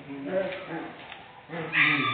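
Two puppies play-fighting, making several short pitched vocal calls; a man's hum comes near the end.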